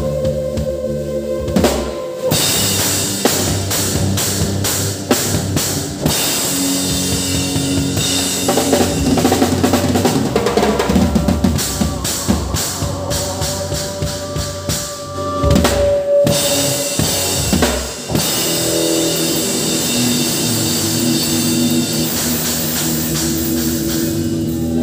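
Live rock band playing, with the drum kit loud and close: sustained bass and electric guitar notes, and the drums coming in hard about two seconds in with dense kick, snare and cymbal hits, with a couple of brief breaks late on.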